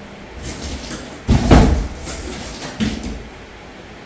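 Several knocks and thuds from things being handled. The loudest and deepest comes about a second and a quarter in, a smaller one near three seconds.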